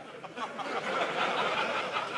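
Studio audience laughing, a sitcom laugh track of many voices together that swells over about a second and then holds.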